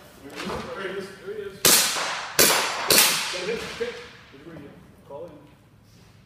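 Three sharp handgun shots, the first about a second and a half in and the next two close together, each ringing out in a large hall, with men shouting around them.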